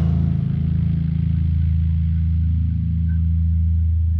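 The song's final low, distorted chord held as a steady heavy drone, its brighter upper part fading away while the low notes sustain.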